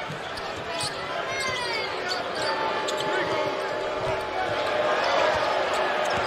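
A basketball being dribbled on a hardwood court, a run of short bounces over steady arena crowd noise, with voices shouting in the crowd.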